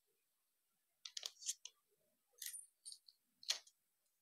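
Sheets of thin joss paper rustling and crackling as they are handled, pleated and creased by hand, in a few short, crisp bursts; the loudest crackle comes about three and a half seconds in.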